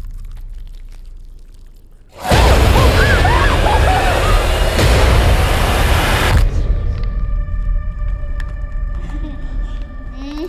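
Horror trailer sound design: a low rumble fades away, then about two seconds in a sudden loud, harsh blast of noise with high wavering glides cuts in. After about four seconds it gives way to sustained eerie high tones.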